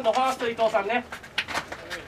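A man's drawn-out, sing-song shouting with held, wavering notes that stops about a second in, followed by a few short sharp clicks.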